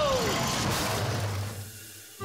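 Cartoon sound effects of a test cart speeding round a looping track: a rushing, rumbling noise over a low hum that fades away in the last half second. A falling tone trails off just after the start.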